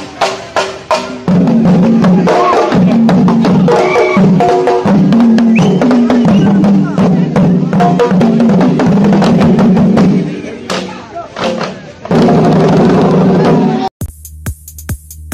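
An ensemble of chenda drums playing a fast, loud rhythmic tune. The playing thins out about ten and a half seconds in, then comes back at full strength about a second and a half later.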